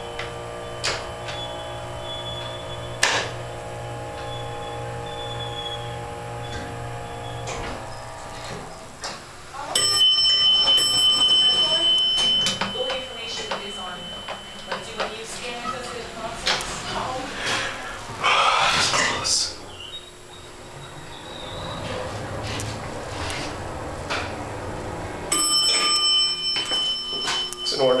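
Elevator car standing at a floor with its doors open. A steady electronic buzzer tone sounds for about three seconds about ten seconds in, and again near the end, over a low hum and muffled voices.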